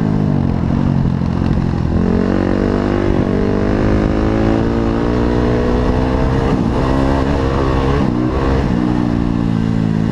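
Off-road motorcycle engine under way, its pitch rising and falling with the throttle: it drops at the start, climbs about two seconds in, and dips sharply several times near the end as the rider shifts or rolls off the throttle.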